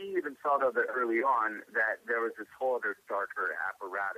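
Speech only: a voice talking steadily with short pauses, thin and narrow, with nothing in the high treble.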